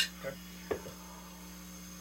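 A steady electrical mains hum, with one faint tap a little before a second in.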